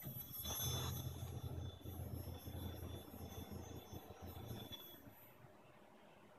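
Servo-driven linear drive rail moving a robot arm along it at speed: a faint low motor hum with a thin high whine. It is loudest about a second in and dies away by about five seconds, as the move ends.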